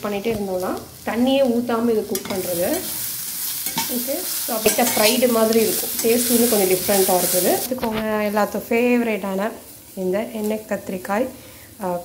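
Chopped carrots and green beans sizzling as they are stirred with a metal slotted spatula in a stainless steel saucepan. The sizzle is loudest in the middle stretch.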